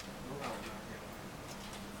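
Quiet, faint handling of a BlackBerry 9700's metal frame and plastic keypad as they are slid apart by hand, over a low steady hum.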